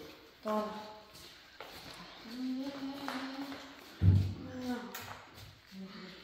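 Scattered short bits of quiet speech and vocal sounds, with a louder burst about four seconds in.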